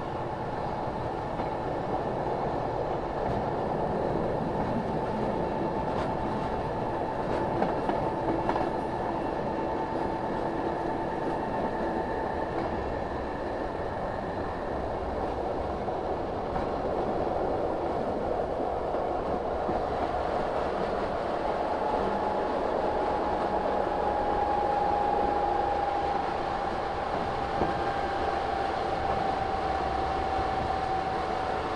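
Diesel train running along the track at speed: a continuous rolling rumble with a steady whine that dips slightly lower toward the end. A few sharp rail clicks come about eight seconds in.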